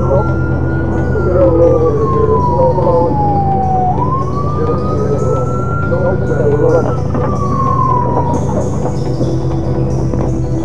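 Police car siren on a slow wail, rising and falling in long sweeps of about three seconds and stopping near the end. A steady low music drone runs underneath.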